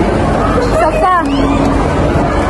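A person's voice talking briefly over the steady background chatter of a crowded food court.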